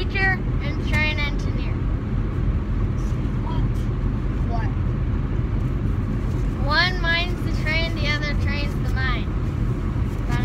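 Car road and engine noise heard from inside the cabin while driving, a steady low rumble, with a high young voice breaking in briefly at the start and again about seven seconds in.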